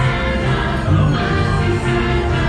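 Christmas parade soundtrack music with a choir singing, played loud and without a break.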